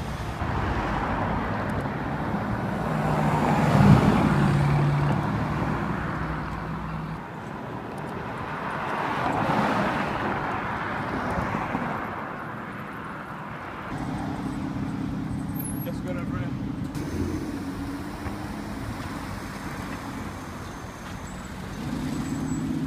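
Road traffic: cars driving past on a town street, with two louder pass-bys about 4 and 9.5 seconds in, then a steady low engine hum from about 14 seconds on.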